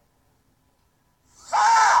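Near silence, then about a second and a half in, a person gives a short, loud, breathy vocal cry.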